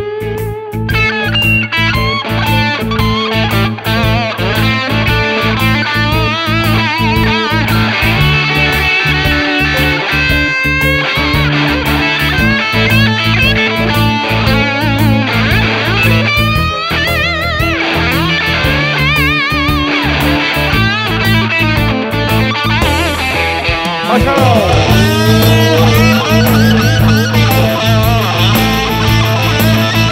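A Sandberg California DC Masterpiece Aged Tele-style electric guitar played through an amp: a lead solo full of string bends and vibrato over a backing track of bass and drums. It has a crispy, rocking vintage tone.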